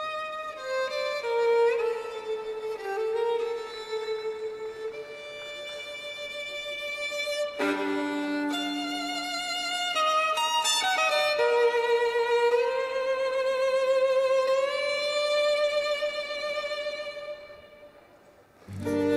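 Recorded music: a violin playing a slow melody of long held notes, fading out near the end.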